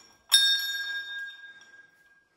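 A hanging brass temple bell struck once. Its several clear high tones fade over about a second and a half, and the lowest tone rings on longest.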